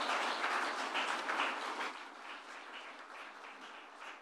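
Audience applauding. The applause fades over a few seconds, thinning to scattered claps near the end.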